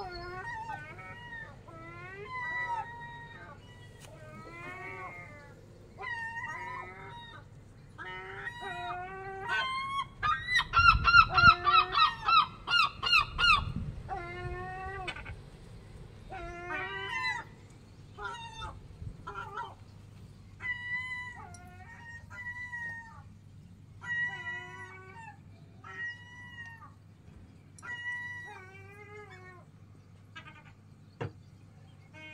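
Gulls calling repeatedly, with a loud run of about eight quick calls from around ten to fourteen seconds in, over a faint steady low hum.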